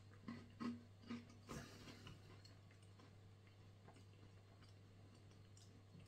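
A few faint crunching clicks in the first two seconds from biting and chewing a dry, dense wheat energy ration bar. After that there is near silence with a low steady hum.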